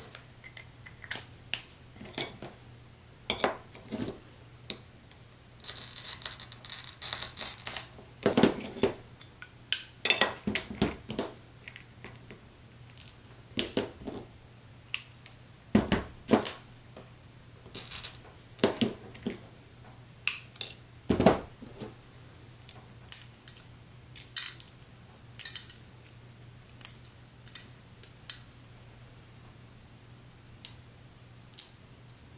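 Art glass being cut and handled on a work table: a scratchy scoring sound for about two seconds near the start, then scattered clicks, snaps and clinks of small glass pieces and tools being set down.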